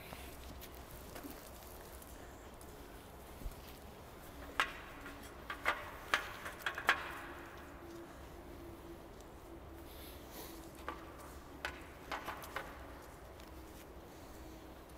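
Faint, irregular thuds and clicks of a horse's hooves on arena sand, clustered in two short runs, over a faint steady hum.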